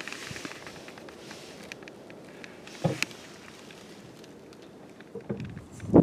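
Faint outdoor background noise with a few light clicks and a short knock about three seconds in.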